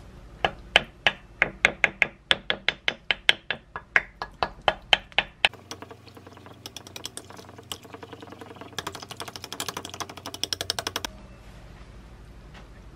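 Chopsticks striking the inside of a ceramic baking dish while mashing soft tofu into raw eggs: sharp clicks about four a second for about five seconds, then faster, lighter clicking as the mixture is beaten, stopping abruptly near the end.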